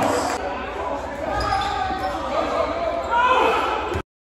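A basketball being dribbled on a hardwood gym floor, with players' and spectators' voices ringing in the hall and a louder burst of voices a little after three seconds in. The sound cuts off abruptly at the end.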